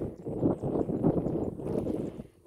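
Walking with a loaded backpack sprayer: dull thuds at a walking pace, about two a second, with the pack jostling.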